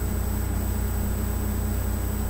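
A steady low hum with a hiss over it and a faint high whine, unchanging throughout, with no distinct events.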